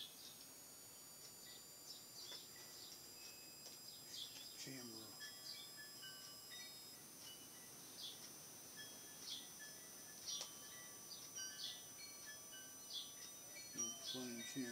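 Faint bird chirps and short calls scattered throughout, over quiet room tone with a faint steady high whine.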